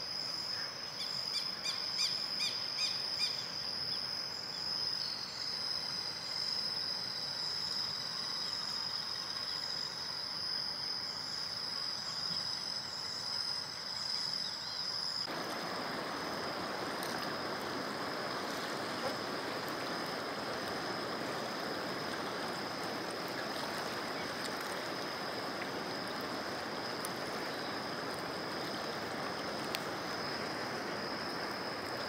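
Insects keep up a steady high-pitched trill, with a few bird chirps near the start. About halfway through, the rushing of the river's floodwater comes in and runs under the insect trill.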